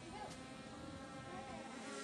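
Small camera drone's propellers buzzing overhead: a faint, steady whine of several tones at once.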